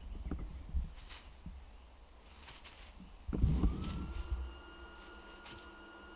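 Footsteps and rustling in dry leaves and brush outdoors, with scattered light crunches and a louder rustle about three seconds in. About four seconds in, a steady thin whistle-like tone sets in and holds.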